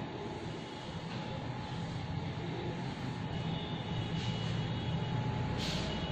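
A steady, low mechanical rumble and hum.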